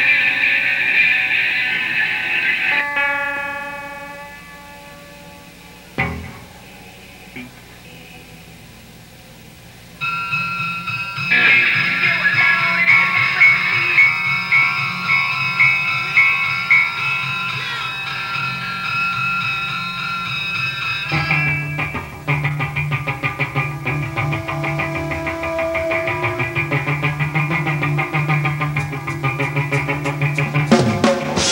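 A live rock band playing an instrumental intro on electric guitars. A ringing guitar chord fades away over several seconds, with a sharp click about six seconds in. Guitars with effects come back in at about ten seconds, and bass and a fast, steady picked rhythm join at about twenty-one seconds.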